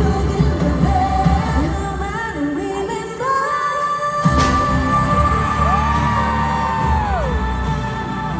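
K-pop song played loud: held, gliding vocal notes over a pop backing track. The beat drops out for about a second just before the middle, then comes back in with a sharp hit.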